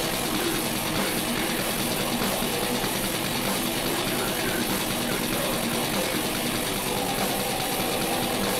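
Live metal band playing at full volume: very fast, continuous drumming under distorted guitar, blurring into a dense, rumbling wall of sound.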